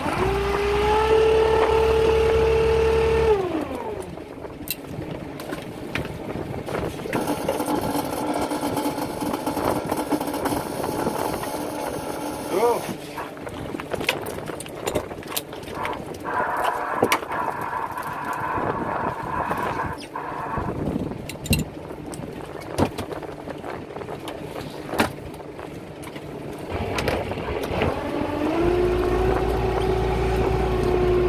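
Motorized line hauler on a fishing boat spinning up to a steady whine, running about three seconds and winding down, then starting up again and running near the end. In between, a lower steady engine sound with scattered knocks and clicks.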